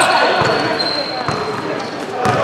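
Basketball being dribbled on a hardwood gym floor, with scattered thuds and sneaker steps under the echoing voices of players and spectators in the hall. A thin, steady high tone runs through most of it.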